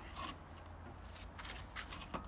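A quiet stretch of low background rumble, with a couple of faint knocks near the end as an aluminium spirit level is set on the top course of newly laid bricks.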